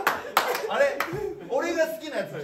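Men laughing hard, with a few sharp hand claps in the first second.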